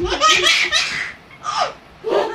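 Baby laughing out loud: a long burst of laughter, then a short one about one and a half seconds in.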